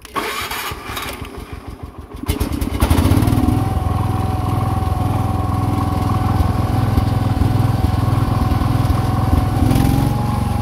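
Wheel Horse lawn tractor engine being restarted after a stall: it cranks unevenly for about two seconds, catches, then runs steadily with a constant high whine over it as the tractor drives off. The uploader blames the stalling on a carburettor problem.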